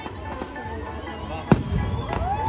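Fireworks display, with one sharp, loud bang about a second and a half in, over the chatter of a watching crowd.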